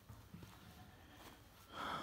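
Faint outdoor background, then a short intake of breath near the end, just before speech resumes.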